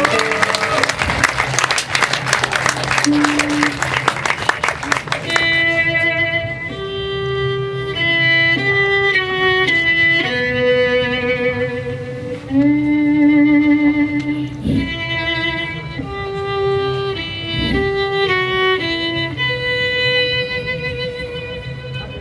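Audience clapping for about the first five seconds, then a violin plays a slow melody of held notes with vibrato, stepping up and down in pitch: the opening of the song.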